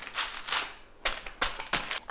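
Baking paper crinkling in about five short rustles as the sheets over and under the rolled-out dough are handled.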